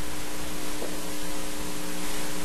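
Steady hiss with a low electrical hum running through it: the background noise of a broadcast sound feed with no one speaking into the microphones.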